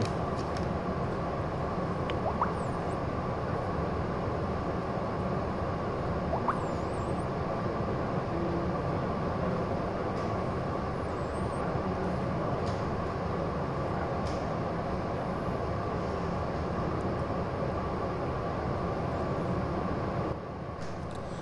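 Steady droning background noise that holds at one level, with a couple of faint brief sounds early on.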